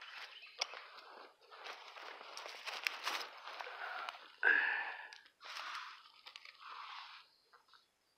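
Footsteps and rustling in dry leaf litter on a forest floor, mixed with handling noise from a handheld camera, in uneven bursts with a louder rustle about halfway through.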